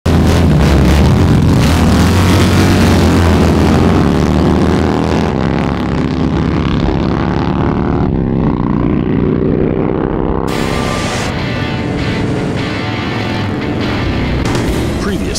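Several Harley-Davidson touring motorcycles' V-twin engines running loud as the bikes pull away, mixed with music. From about five seconds in the sound turns muffled, and from about ten seconds music takes over.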